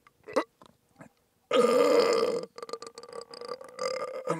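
A person burping into a close microphone: one long, steady burp about a second and a half in, trailing off into shorter broken croaks.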